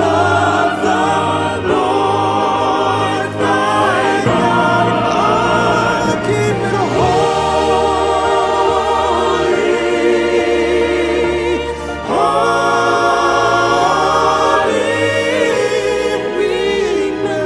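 Gospel choir and lead singers singing a Christian song over instrumental backing with a steady bass, the voices holding long notes with vibrato.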